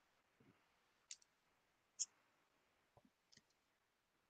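Near silence: room tone with a few faint short clicks, about one and two seconds in and again near the end.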